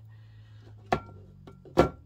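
A clear glass plate set down on a table: two knocks less than a second apart, the second louder, each followed by a short ringing tone from the glass.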